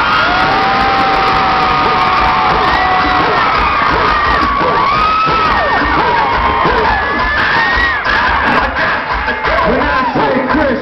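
Concert crowd cheering and screaming, many high voices overlapping, loud and steady, easing slightly near the end.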